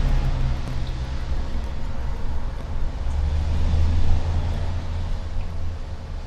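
A low rumble over a steady background hiss, swelling about three seconds in and easing off again near the end.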